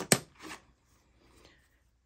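A sharp clack of a hand tool being put down among the tools in a fabric tool tote, a faint rustle about half a second in, then near silence.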